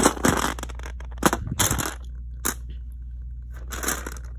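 Close-up handling noise: irregular crunching and scraping bursts, three longer ones and a short one, as the phone and small plastic pieces are moved against a plastic baseplate.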